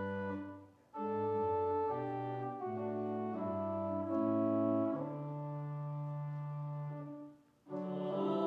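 Organ playing a hymn in held chords, breaking off briefly between phrases about a second in and again near the end.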